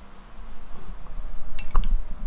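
A basting brush knocking against a small ceramic bowl of soy-sauce seasoning: quiet handling, then two sharp clinks with low knocks near the end.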